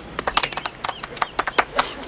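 A few people clapping sparsely, with scattered, uneven hand claps.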